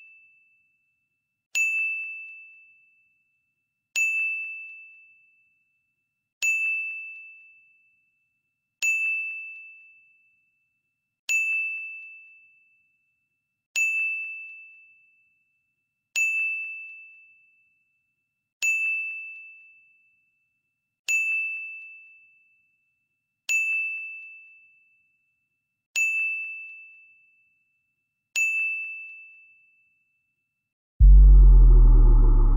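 Quiz countdown-timer sound effect: a single clear chime struck about every two and a half seconds, a dozen times, each ringing out and fading. One chime marks each step of the countdown.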